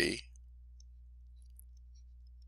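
A man's voice ends a word just at the start, then a faint steady low hum with a few very faint clicks while handwriting is drawn on a digital whiteboard.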